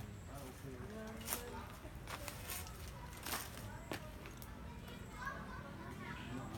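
Faint distant voices, with a few short soft clicks between about one and four seconds in.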